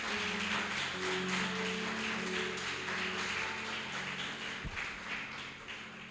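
A congregation applauding, the clapping thinning out toward the end, over soft sustained instrumental chords.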